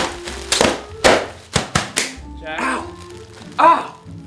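Inflated plastic air-pillow packing cushions being squeezed and burst: about six sharp pops in the first two seconds.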